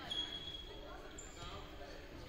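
Gymnasium sounds during a lull in a volleyball match: voices talking around the court and a ball bouncing on the hardwood floor. A thin high squeak-like tone starts just after the opening and holds for almost a second, and a shorter, higher one follows a little past the middle.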